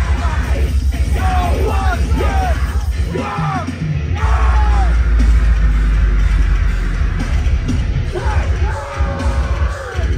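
Deathcore band playing live and loud: distorted guitars, bass and drums with harsh screamed vocals. From about four seconds in, the low end grows heavier and holds steady.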